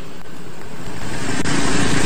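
Roadside motor traffic: a steady rushing noise that grows louder over the second half as a vehicle comes closer, with a low engine hum near the end.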